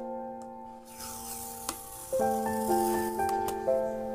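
Soft piano music with held notes and a new chord about two seconds in, over a light rustling and rattling of handling noise that starts about a second in.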